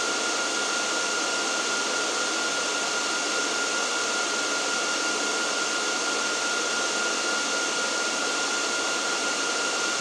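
Dell R740 rack server's cooling fans running loud and steady: an even rush of air with a constant high whine through it.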